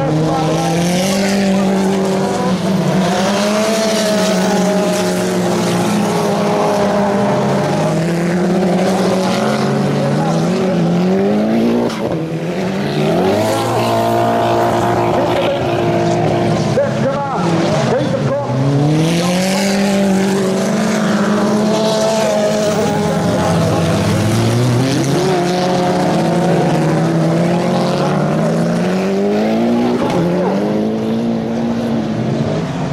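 Engines of several autocross cars revving hard on a dirt track, their pitch climbing through each gear and dropping sharply at the shifts, again and again as the cars race past.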